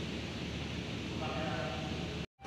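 A distant person's voice calling out in drawn-out tones in the second half, over a steady low hum.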